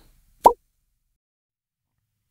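A single short sound-effect blip about half a second in, with a sharp start and a pitch that drops quickly.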